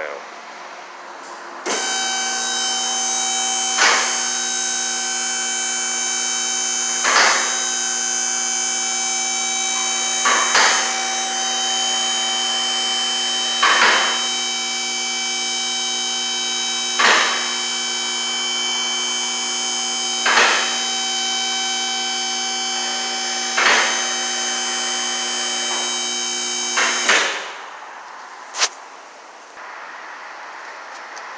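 Hydraulic power unit of a Hunter scissor alignment lift running steadily for about 25 seconds as the lift is raised, with its safety locks clicking about every three seconds. It cuts off suddenly, followed by one more click about a second later.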